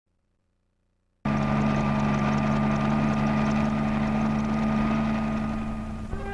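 Light helicopter in flight, its engine and rotor running with a steady low drone. The sound cuts in suddenly about a second in and eases off a little near the end.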